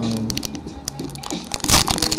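Foil Pokémon booster pack wrapper crinkling as it is handled, with a sharp louder crinkle near the end.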